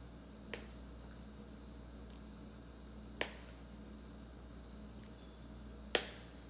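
Metal ladle clinking against a stainless steel wok as soup is ladled out: three sharp clinks, a light one about half a second in, a sharper one past the midpoint and the loudest near the end, over a faint steady hum.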